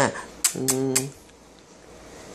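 Three quick, sharp clicks about half a second in, over a short, low, steady hum from a voice; then the room goes quiet.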